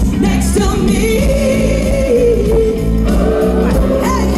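A woman's solo voice sings loud through a PA over a live band. About a second in she holds one long, wavering note until nearly the end.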